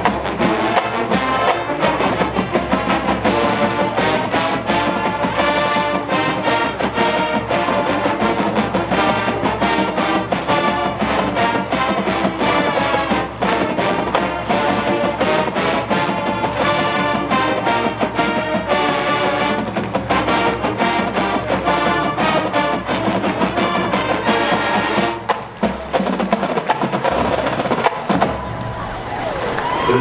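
High school marching band playing, brass over percussion, with a loud full-band hit near the end.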